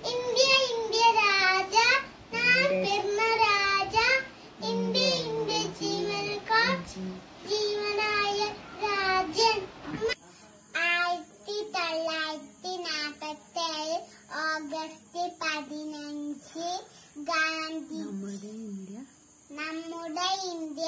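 A young boy singing a song alone, without accompaniment, in phrases with held notes. The recording changes abruptly about ten seconds in, and a faint steady hiss runs under the voice after that.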